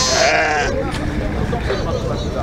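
A sheep bleats once, a wavering call lasting under a second at the very start, over the murmur of people's voices around the pen.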